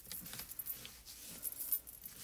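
Faint rubbing of a wet wipe over a thin plastic stencil being cleaned of paste, with a few light jingling clinks.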